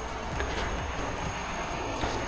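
Steady background noise: an even hiss and low rumble with a thin, faint high-pitched whine.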